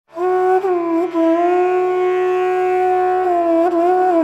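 Intro music: a flute-like wind instrument holding long notes with small bends and slides, over a steady low drone.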